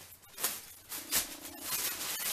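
Soft rustling of a clothing top being taken out and unfolded, in short bursts about half a second and a second in.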